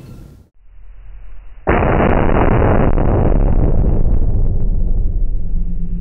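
A .308 Winchester rifle shot slowed down to match slow-motion footage: a sudden deep boom about a second and a half in that rolls on for several seconds, its higher part fading first.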